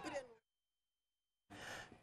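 Near silence: the tail of a woman's voice fades out at the start, then dead silence, then a short faint breath near the end.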